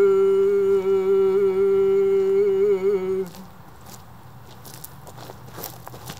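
A man's singing voice holds one long, steady note with a slight waver, with no accompaniment heard. It stops about three seconds in, and a few faint taps follow.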